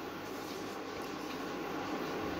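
Steady, even background hiss with no distinct strokes or knocks.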